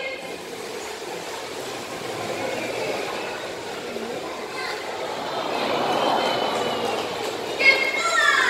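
Steady murmur of a large audience in an echoing indoor hall, mixed with water moving in a sea lion pool. It swells about six seconds in, and a brief sharp sound comes just before the end.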